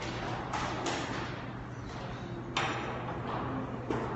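Steady low hum of a hall with faint scattered audience noise, and two sharp knocks: the louder about two and a half seconds in, another near the end.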